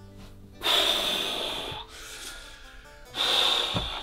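An elderly man sobbing in grief: two long, heavy, gasping breaths, each about a second long, the second near the end. Soft sustained background music runs underneath.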